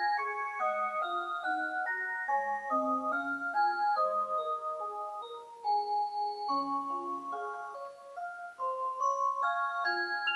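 Rhythm Small World Magic Motion wall clock playing one of its built-in melodies through its Clarion Tone System sound: a tune of clear held notes in two or three parts, changing several times a second.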